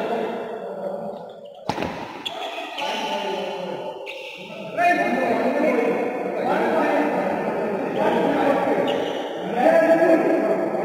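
Badminton racket striking the shuttlecock with a single sharp crack a little under two seconds in. People's voices call out through much of the second half, echoing in a large hall.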